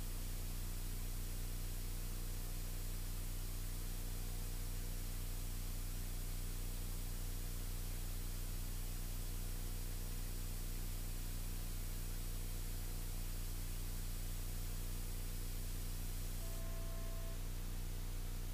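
Beechcraft Bonanza's piston engine and propeller at climb power, the propeller set to 2500 rpm, heard as a steady low drone under an even hiss. A brief beep sounds near the end.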